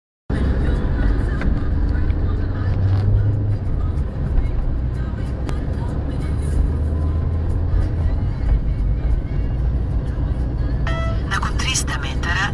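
Low, steady rumble of a car driving, heard from inside the cabin. Near the end a short beep sounds and a navigation app's synthesized voice prompt begins.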